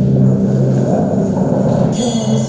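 The soundtrack of a documentary clip starting loudly over the hall's speakers: a steady, deep droning tone with no words yet.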